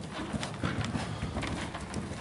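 Horse's hoofbeats on sandy arena footing under a ridden horse moving at pace: a steady run of dull thuds.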